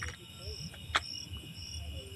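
Insect chirping in the background: short high chirps repeating evenly, about two a second. A single sharp click about a second in.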